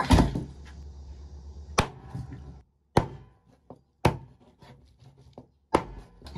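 A cleaver chopping a raw chicken into pieces on a wooden chopping board: five sharp chops about a second apart.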